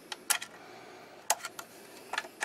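A few short, light clicks and knocks of the FN PS90's polymer stock and parts being handled as its trigger-pack release lever is worked, the sharpest about a second in.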